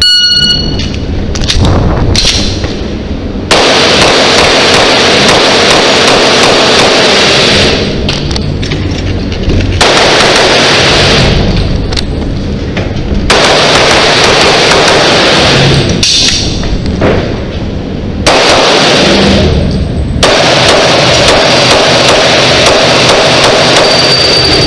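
A shot timer's start beep, then loud indoor pistol fire in long strings that run together, broken by short pauses of a second or two.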